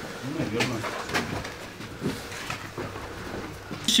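Indistinct voices talking quietly, with a few short knocks or clicks scattered through.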